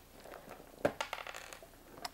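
Plastic building bricks clicking and rattling as a brick model is handled: one sharp click just under a second in, then a quick run of lighter clicks.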